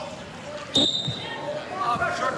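A referee's whistle, one short sharp blast about three quarters of a second in, starting the wrestlers from the referee's position. Voices and crowd noise of a gym are heard around it.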